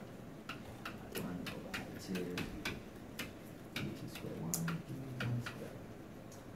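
Dry-erase marker writing on a whiteboard: a quick, uneven run of sharp taps, about two or three a second, as each stroke of an equation is put down.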